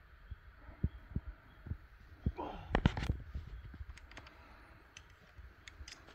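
Irregular low thumps of footsteps, with a few sharp clacks about three seconds in.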